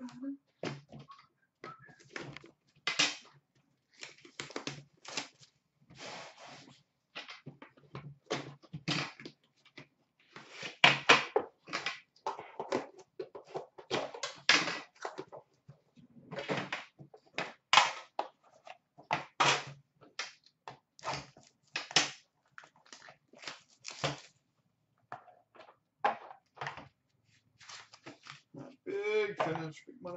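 Packaging handled in irregular bursts of rustling, scraping and knocking as a hockey card box is opened: the metal tin of a 2013-14 Upper Deck The Cup box is taken out and its lid lifted, and the cards inside are unwrapped.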